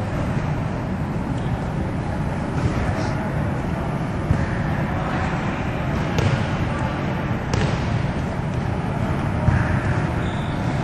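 Steady low room rumble of an indoor gym, with a few faint, scattered thuds of volleyballs being set and bouncing on the court floor.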